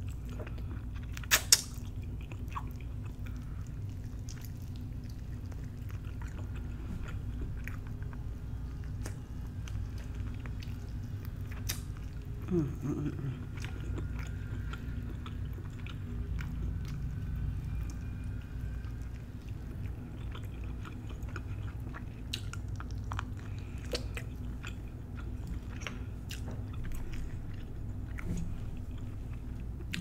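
A person chewing and biting braised oxtail meat off the bone, close to the microphone, with scattered wet mouth clicks and a couple of sharper snaps.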